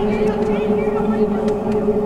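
A steady, unchanging mechanical hum, with faint voices over it in the first second.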